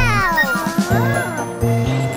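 Children's song music, with a high-pitched cartoon child's voice exclaiming a long "Wow!" that rises and falls at the start, and a second shorter call about a second in.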